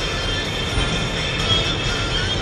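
Steady low rumble of a car's engine and tyres heard from inside the cabin while driving, with radio music playing faintly underneath.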